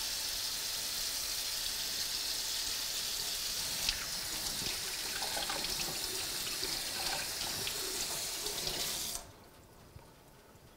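Water running from a tap into a sink while hands are washed under it, with a few splashes and knocks in the stream. The tap is turned off about nine seconds in and the flow stops suddenly.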